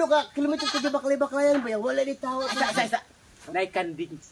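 Goat bleating: one long quavering bleat of about two seconds, then a shorter one.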